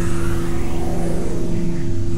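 A steady, loud low drone with a deep rumble under it, the sound effect of an animated production-company logo sting.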